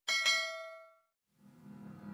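Notification-bell "ding" sound effect: a single bright bell strike whose ring fades away within about half a second.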